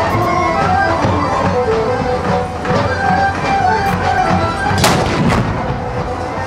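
A small wheeled field cannon fires once, about five seconds in: a single sharp blast with a short echo, heard over music that plays throughout.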